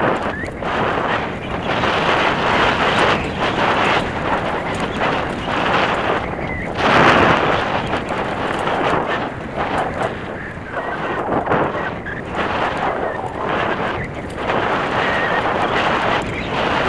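Mountain bike riding fast down a forest dirt trail: tyres on dirt and leaf litter, with the bike rattling over the bumps. The noise swells and fades about once a second, loudest about seven seconds in.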